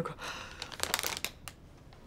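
Plastic bag of dried anchovies crinkling as it is handled: soft rustles and crackles that die away about a second and a half in.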